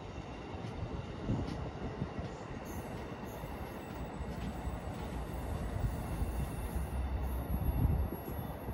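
Amtrak passenger train of Amfleet coaches rolling past, with steady wheel-on-rail noise and rumble as its last cars and rear cab car go by and it moves away.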